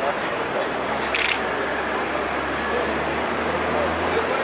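Photographers' background chatter with a camera shutter firing about a second in. A low steady hum comes in over the second half.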